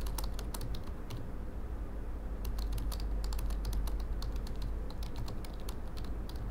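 Typing on a computer keyboard: two runs of quick keystrokes with a pause of about a second between them.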